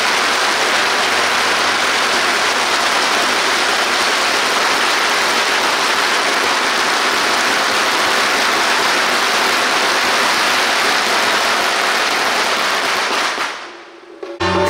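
A long string of firecrackers going off in one continuous dense crackle, which stops suddenly near the end.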